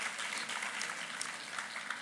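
Audience applauding at a modest, steady level in a hall.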